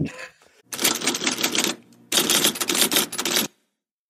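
Typewriter keys clacking in two rapid runs of about a second each, with a short break between them, then cut off into silence.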